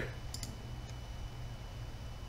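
A computer mouse clicking a few times in quick succession, about a third of a second in, over a low steady background hum.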